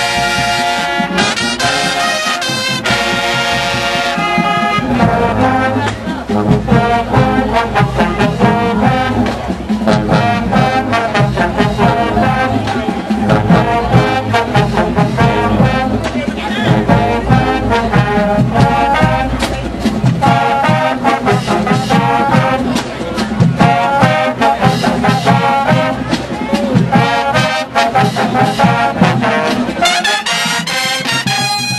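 High school marching band playing: brass (trombones and trumpets) holds loud chords for the first few seconds, then a drumline comes in about five seconds in with a fast steady beat under the horns.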